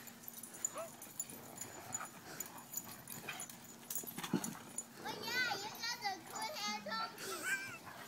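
Dogs at rough off-leash play: about five seconds in, one dog gives a quick run of high, wavering whines and yips.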